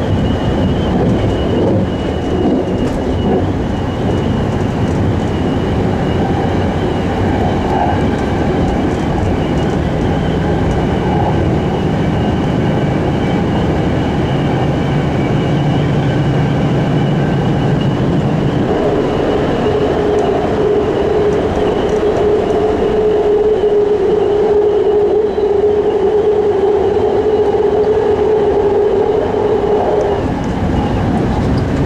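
A BART rapid-transit train running at speed, heard from inside the passenger car: a steady rumble of wheels on rail with a high whine over it. About two-thirds of the way through, a low hum fades and a steady mid-pitched tone comes in and holds.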